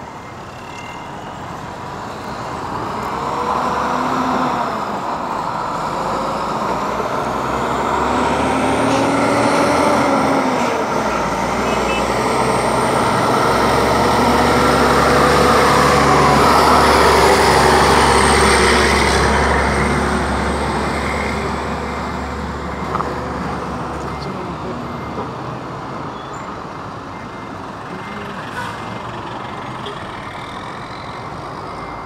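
Mack CH semi tractor's diesel engine pulling a trailer loaded with a Caterpillar 320D L excavator. The sound builds as the rig approaches, is loudest with a deep rumble a little past halfway as it drives past, then fades away.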